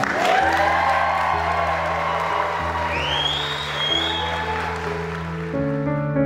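Wedding guests applauding and cheering, with a few whoops, over soft background music of held chords. The applause fades near the end as new piano-like notes come in.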